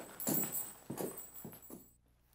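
Boot footsteps on a wooden porch: a few irregular hard knocks that fade away near the end.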